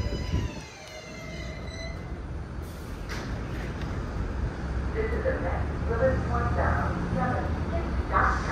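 R188 subway train's electric propulsion whine, falling in pitch over the first couple of seconds as the train slows to a stop and then fading. The stopped train's steady low hum follows, with voices from about five seconds in.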